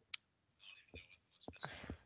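Faint, hushed voice sounds: a short click just after the start, then soft whispery sounds and a few brief, quiet voiced bits in the second half.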